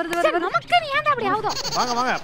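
A voice warbling in a shaky, goat-like bleat in the first half second. Then come excited, swooping cries from several voices, with a bright rattling hiss near the end.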